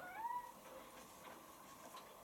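Miele Professional PW6055 washing machine running faintly in its prewash, drum tumbling. In the first half second there is a short tone that rises and then levels off.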